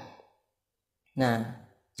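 Speech only: a man preaching a Buddhist sermon in Khmer trails off at the end of a phrase, pauses for about a second, then utters one short syllable before speaking on.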